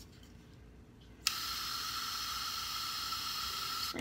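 Air Wick aerosol air freshener sprayed in one steady hiss, starting about a second in and cutting off sharply after about two and a half seconds.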